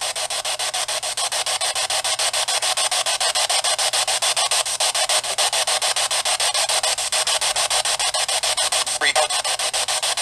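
Static hiss from a small portable speaker, chopped into rapid, evenly spaced pulses throughout, with a brief wavering tone about nine seconds in.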